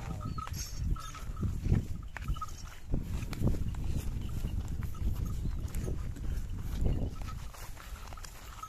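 Khillar bull and its handlers walking through grass, with irregular soft steps and rustling over a steady low rumble.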